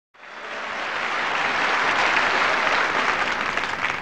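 Audience applauding, swelling up over the first second and then holding steady.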